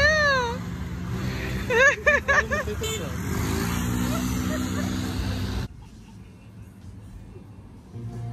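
Cars of a drive-by parade rolling past, with short high whooping calls at the start and again about two seconds in, and a steady pitched tone held for a few seconds after that. The sound drops suddenly to quieter street noise a little past halfway.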